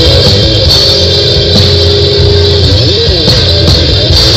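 Rock band playing live, with no singing: an electric guitar holds one long note, then bends its pitch up and down near the end, over bass and drums. The recording is loud and rough, made on a Nokia N70 phone.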